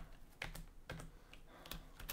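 Computer keyboard typing: a few separate, fairly faint keystrokes.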